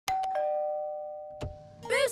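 Cartoon doorbell chime: a two-note ding-dong, higher note then lower, ringing on and fading. A single sharp click follows about a second and a half in, and a louder jangly sound starts just before the end.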